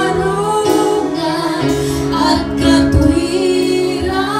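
A woman singing a slow Tagalog worship song into a microphone, holding long notes over instrumental accompaniment.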